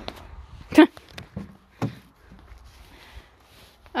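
Plastic pet carriers bumping and knocking as they are loaded onto a car's back seat: several sharp knocks, the loudest about a second in, then a few more over the next second, over a faint low rumble.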